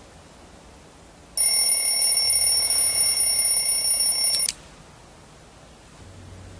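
An alarm clock ringing: a loud, steady, high-pitched ring starts about a second and a half in, lasts about three seconds and cuts off suddenly.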